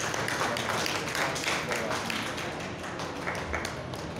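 Scattered clapping from a small audience, a dense run of irregular hand claps.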